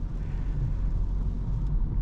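Steady low cabin rumble inside a 2024 Opel Corsa driving on a wet road: tyre and road noise with the petrol engine running underneath.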